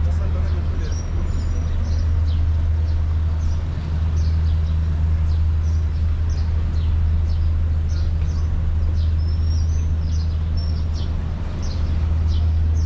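Small birds chirping in many short, high notes over a steady low rumble from the street and moving microphone.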